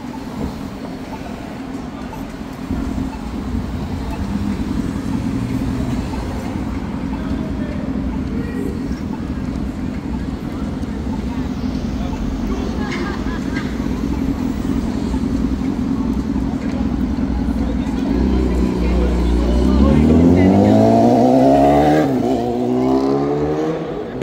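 Street traffic with a steady low engine hum and rumble. Near the end a vehicle accelerates away, loudly: its engine pitch rises, drops at a gear change and rises again.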